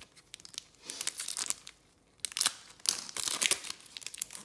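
Foil trading-card pack wrapper being torn open and crinkled by hands in nitrile gloves, in short bursts about a second in and again near the end, with a brief pause between.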